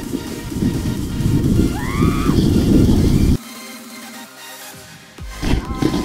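Background music over the low rumble of a sled sliding fast over snow, with wind on the camera. The rumble cuts out abruptly about three and a half seconds in and comes back near the end.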